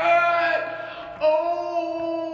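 A man's voice in high falsetto, wailing two long held notes in a drawn-out, sung "oh my god". The second note starts a little past halfway.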